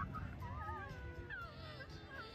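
Faint cat meows from a giant 3D cat billboard: several short rising-and-falling calls over a low street murmur.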